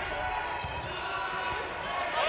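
Basketball arena ambience: a steady crowd murmur with a basketball being dribbled on the hardwood court.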